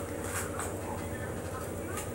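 Faint rustling of a baking-paper wax strip on a forearm as fingers pick at its edge to lift it, over a steady low hum.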